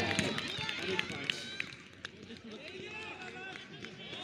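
Players' voices calling and shouting across an open cricket field, with two short sharp knocks about one and two seconds in.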